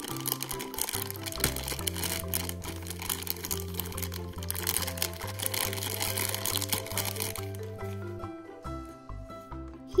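Clear plastic toy bag crinkling and tearing as it is opened, over background music with steady bass notes; the crinkling stops about two and a half seconds before the end, leaving the music.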